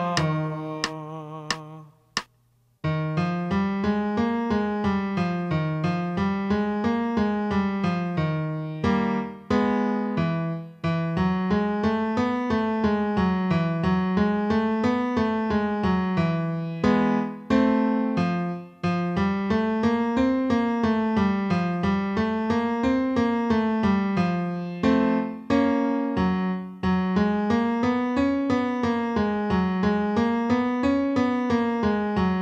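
Piano accompaniment for a vocal warm-up: after a short pause about two seconds in, it plays five-note scales up and back down over and over in an even rhythm, with a held chord and a brief break between rounds every several seconds.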